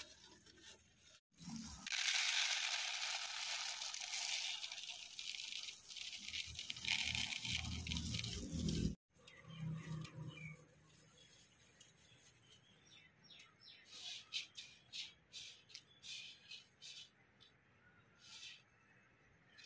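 Dry grain poured from a cloth bag into a plastic bowl: a steady hiss lasting about seven seconds, then quiet scattered clicks as a hand stirs through the grain.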